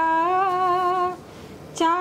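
A woman's voice holds one steady note of a Hindi lullaby for about a second, then falls quiet briefly before the singing starts again near the end.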